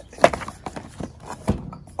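Cardboard mailer box handled on a glass tabletop while its lid is pressed shut. A sharp tap sounds about a quarter second in, with light scuffs and clicks after it and a duller knock about a second and a half in.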